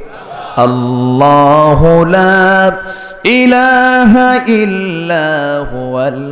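A man's voice chanting 'Allah' in two long, drawn-out melodic notes, the second starting about halfway through.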